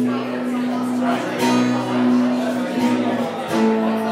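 Acoustic guitar strummed under long, sustained melody notes that shift pitch a couple of times. One strum about a second and a half in stands out.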